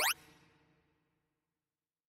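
Synthesized tones of a sorting-algorithm visualizer: the last notes of a rising sweep of pitches cut off just after the start, marking a finished sort, and a faint tail fades out within about a second, leaving silence.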